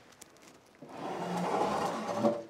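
A quiet start, then about a second in a soft rustling scrape that swells and holds: the espresso machine's countertop unit being gripped and lifted off its travel plinth.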